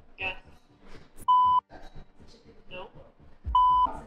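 Two short, steady censor bleeps, each about a third of a second long and about two seconds apart, laid over the dialogue.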